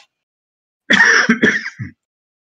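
A man coughing, a short run of three or four coughs starting about a second in.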